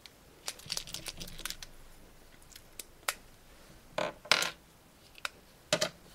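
Plastic liner pens and their caps being handled on a desk: a scatter of light clicks and taps, with two louder short scuffs about four seconds in and another just before the end.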